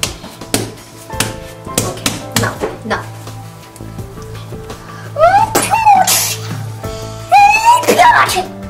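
Pizza dough being slapped and pressed by hand on a countertop: a run of short soft smacks in the first few seconds, over steady background music. About five seconds in, and again near the end, a voice gives short rising-and-falling cries.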